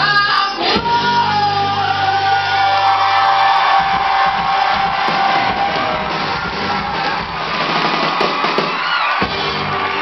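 A live rock band's closing chord rings out with a long held note. The chord stops about three and a half seconds in, and an audience cheers and whoops in a large hall.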